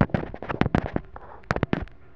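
Close handling noise: a rapid run of sharp clicks and crackles through the first second, then a second short flurry about a second and a half in.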